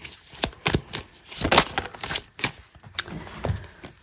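A deck of tarot cards being shuffled by hand, making an irregular run of quick papery flicks and snaps.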